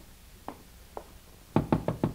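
Radio sound effect of knuckles knocking on a closet door: three soft taps about half a second apart, then a quick run of sharp knocks starting about one and a half seconds in.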